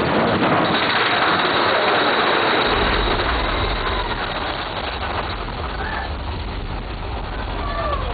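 Big Thunder Mountain Railroad mine-train roller coaster cars running along the track, a steady rattling rumble with a thin high tone above it. A deep low rumble joins in about three seconds in as the train enters a dark section.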